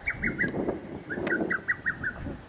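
A songbird singing runs of short, quickly repeated high notes, about five a second, heard twice, with a single sharp click about a second and a quarter in.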